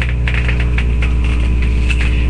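A steady low mechanical hum with a stack of even overtones, under scattered light clicks and rustling.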